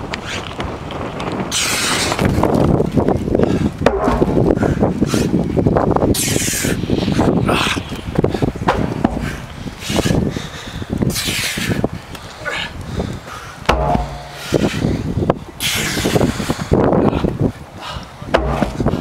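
A 580 lb tractor tire being flipped over and over on pavement, about one flip every four to five seconds, each marked by a loud noisy burst, with wind noise on the microphone between flips.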